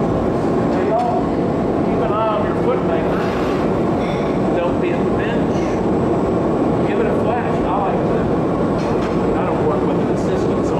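Steady roar of a glassblowing hot shop, from the gas-fired glory hole burners and the furnace ventilation, with faint indistinct voices in the background.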